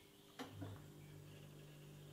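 Near silence: room tone with two faint clicks about half a second in, followed by a faint steady low hum.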